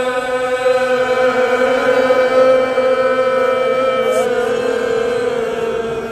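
A male voice holding one long sung note in a Persian Muharram mourning chant (rowzeh), steady in pitch, with a slight bend about four seconds in and fading a little near the end.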